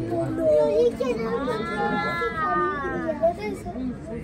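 Children's voices and chatter, with one child's long, drawn-out high-pitched call from about a second in that rises and then falls over some two seconds.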